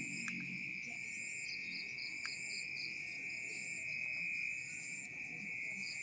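Steady, high-pitched insect chirring, with a fainter pulsing chirp layered above it, and a faint click or two.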